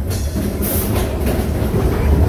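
Seven Dwarfs Mine Train roller coaster car rumbling along its track, with a short hiss about two-thirds of a second in.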